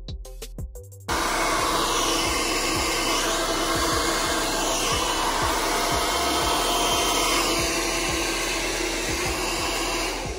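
Handheld hair dryer blowing steadily while hair is being blow-dried. It cuts in suddenly about a second in, over background music with a beat.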